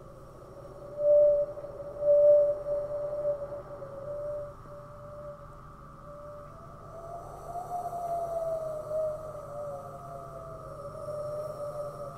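A drawn-out, wavering call like a whale's song: one pitch that swells loudest about one and two seconds in, then slides up and back down from about seven seconds in, over a low steady hum.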